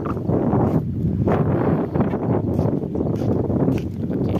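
Wind buffeting a phone's microphone in irregular gusts, a loud low rumbling rush with sudden surges.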